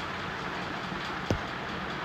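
Steady low hum and hiss of kitchen background noise, with one sharp knock a little over a second in.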